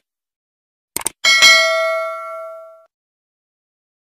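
Two quick clicks, then a single bright bell ding that rings out and fades over about a second and a half. It is the stock sound effect of a subscribe button being clicked and its notification bell ringing.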